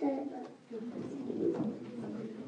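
Young children's voices close to a microphone: a sung note trails off, then after a short pause comes low, wavering murmuring.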